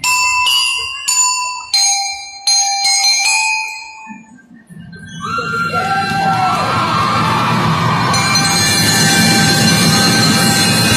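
Bell lyres (metal-bar glockenspiels) struck with mallets, ringing out about six single notes one after another over the first four seconds. After a brief dip, the band plays fuller and denser from about five seconds in.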